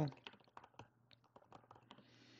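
Typing on a computer keyboard: a quick, uneven run of soft key clicks.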